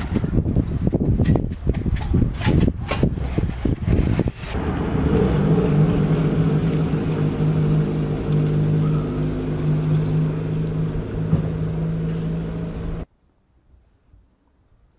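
Gusty wind buffeting the microphone, then from about four seconds in a steady engine hum that holds one pitch. The sound cuts off abruptly about a second before the end.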